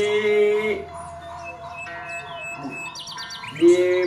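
A man's voice holds one drawn-out vowel, then falls away into a quieter pause with faint high bird chirps and steady thin background tones. His voice comes back just before the end.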